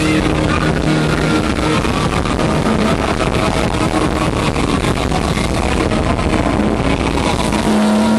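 Live rock band playing loudly, with electric guitar, bass and drums, caught by a camera microphone in the audience as a dense, noisy wash of sound with a few held low notes.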